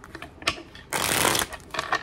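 Deck of tarot cards being shuffled by hand: a few sharp card clicks, then a loud, dense rattle of cards flapping together lasting about half a second, then a few more clicks near the end.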